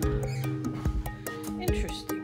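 Background music with a steady beat, sustained chords and a singing voice.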